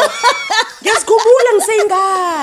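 People laughing, mixed with bits of speech.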